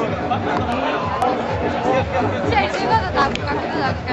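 Talking over background music with a steady low beat.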